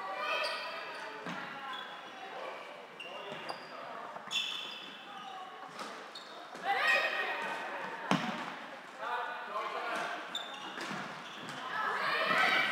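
The sounds of an indoor floorball game: players shouting and calling to each other, shoes squeaking on the court floor, and a sharp click of stick on ball about eight seconds in.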